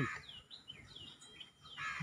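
A small bird chirping repeatedly: short, high notes that slide downward, about two or three a second.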